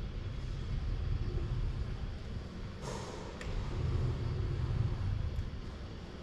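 Low steady rumble of a Universal Robots UR10e robot arm travelling across the bench, with a short hiss about three seconds in and a light click just after.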